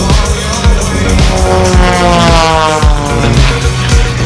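Aerobatic propeller plane's engine passing, its note falling steadily in pitch over about two seconds as it goes by, over loud background music with a steady beat.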